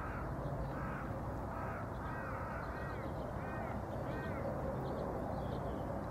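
A bird calling repeatedly in the distance: a run of short calls that rise and fall in pitch, a little more than one a second, dying away about two-thirds of the way through, over a steady low background hum.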